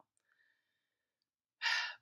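Near-silent pause, then, about one and a half seconds in, a woman's single loud, breathy exhale or in-breath, a sigh.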